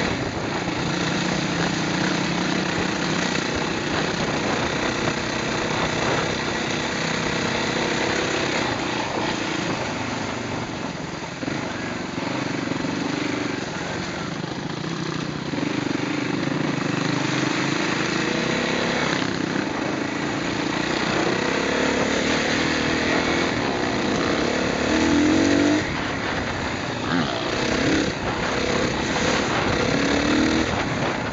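Off-road motorcycle engine running while riding a rough gravel track, its revs rising and falling with the throttle, with a brief louder rev late on.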